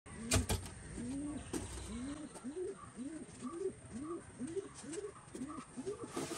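A bird calling a series of short, low hoots, about two a second, each rising and then falling in pitch. A couple of sharp clicks come right at the start.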